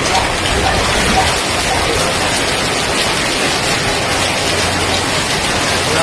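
Heavy typhoon rain pouring down steadily onto surfaces: a loud, even hiss that doesn't let up.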